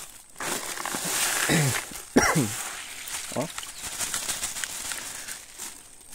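Black plastic bag crinkling and rustling as dry koi feed pellets are poured from it into a metal basin of water. A few brief falling vocal sounds come through in the middle.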